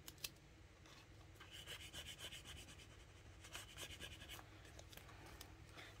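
Home-cut vinyl letter decals being rubbed down onto a paper planner page: faint, irregular rubbing and scratching strokes, strongest through the middle, with a light click just after the start.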